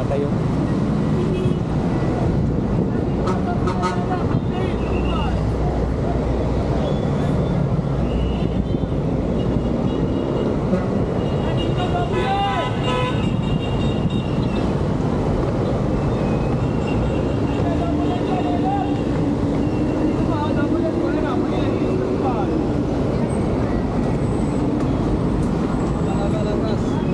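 Busy market street ambience: many voices chattering in the background over running vehicle traffic.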